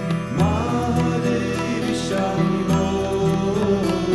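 Devotional music with a chanted vocal line in long held notes. The voice slides up into a note just after the start.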